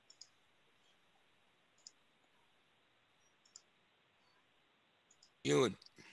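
A few faint, isolated computer mouse clicks a second or two apart over a very quiet background, then a brief spoken word near the end.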